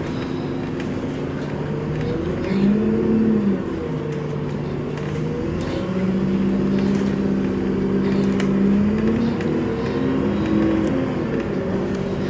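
A bus's engine and drivetrain heard from inside the moving bus: a steady run with pitched tones that glide up and down as it speeds up and slows. It grows a little louder about halfway through.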